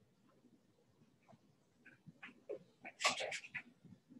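Writing strokes on a board: a few faint short strokes from about two seconds in, then a quick run of louder, sharper strokes near the end.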